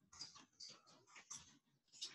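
Faint, quick keystrokes on a computer keyboard as a file name is typed.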